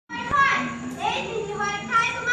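Children's voices speaking stage dialogue in a play.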